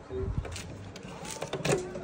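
Plastic door-release button of an old microwave oven being pressed, with a few faint clicks about one and a half seconds in.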